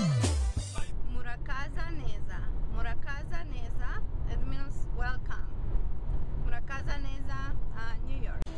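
Steady low rumble of road noise inside a moving car's cabin, under a woman's voice. In the first second the music before it ends with a steep falling pitch glide.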